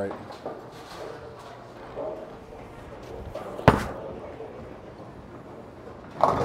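A bowling ball landing on the lane at release: one sharp thud a little past halfway through, followed by a fading rumble as it rolls away, over the low hubbub of the bowling centre.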